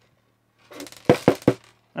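Small steel balls and drill gearbox parts clicking and clattering against each other on the bench. A brief rustle comes first, then three sharp clicks close together about a second in.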